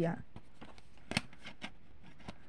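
Handling noise: light clicks and rustles as objects are picked up and moved, with one sharper click just over a second in.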